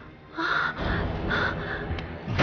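A young woman's hoarse, gasping breaths in pain or distress: about four short, strained pants in quick succession, starting about half a second in.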